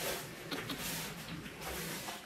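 Paper napkin rubbed over a metal baking tray by a gloved hand: quiet, soft rubbing and swishing as burnt-on carbon loosened by the cleaner is wiped away.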